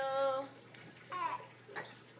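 A baby's voice: a held "aah" in the first half-second, then a short high squeal falling in pitch just after a second in.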